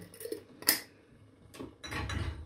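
Light clicks and clinks of glass spice jars being handled in a kitchen, with one sharper clink a little under a second in.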